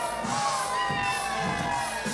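A crowd shouting and cheering around a dancer, over beat-driven music with a steady low pulse.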